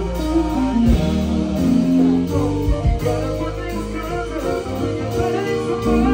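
Live go-go band music played loud over a club PA, with a heavy bass line under held instrument notes.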